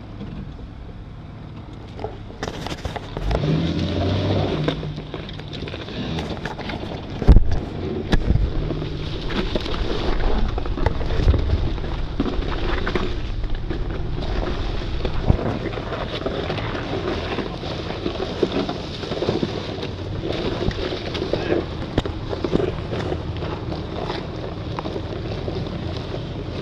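Four-wheel-drive vehicle crawling down a steep, rocky trail: the engine running low under the tyres grinding over loose rock and leaves, with scattered knocks and bangs from the body and suspension, the loudest about seven seconds in.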